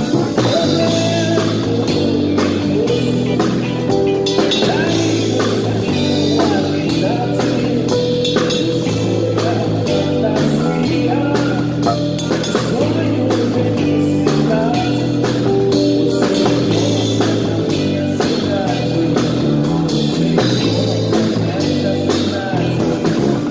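Electric bass (an N.Zaganin played on its neck pickup alone for a vintage Precision Bass tone) playing a repeating samba-rock/soul groove with a live band, drums hitting steadily over it. Recorded through a phone's microphone on the stage.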